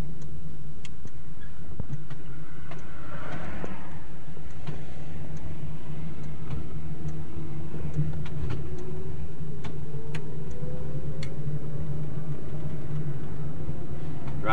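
A 1969 electric car with a DC traction motor, heard from inside while it is driven: a steady low hum with scattered light clicks, and a faint whine that rises slowly in pitch through the middle as the motor picks up speed.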